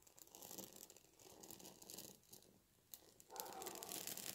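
Faint, irregular crackling of alcohol-soaked dry bay leaves catching fire and burning, growing louder about three and a half seconds in as the flames spread.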